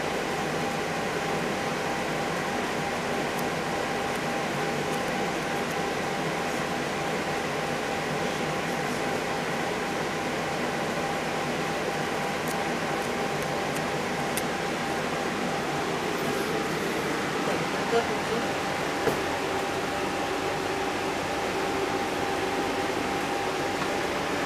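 Steady mechanical hum with a few fixed tones, like a room fan or air conditioner running, holding an even level throughout, with a couple of faint clicks.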